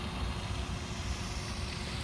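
Steady outdoor background noise: a fluctuating low rumble with a faint hiss over it.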